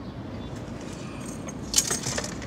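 Low, steady hum of a car cabin, with one brief sharp rustle or click near the end.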